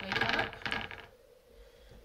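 Foam sponge dauber being worked into paint in the well of a plastic paint palette: a scratchy, clicking scrape in two short bursts within the first second.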